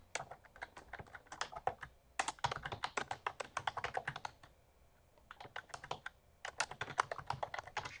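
Typing on a computer keyboard: runs of quick key clicks, breaking off for about a second around the middle before picking up again.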